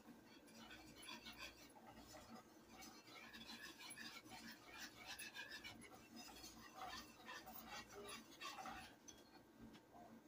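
Faint stirring of instant mashed potatoes in a metal saucepan: soft, irregular scraping and light clicks of the utensil against the pan as the flakes thicken in the milk, over a low steady hum.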